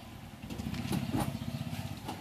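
A small engine running with a rapid, even low pulse that grows louder about half a second in, with a couple of sharp clicks near the middle.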